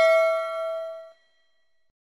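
A bell-like ding sound effect of a notification bell, several tones ringing out together, fading and cutting off about a second in.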